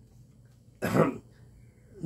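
A man gives a single short cough in a pause between sentences, the rest of the pause near quiet.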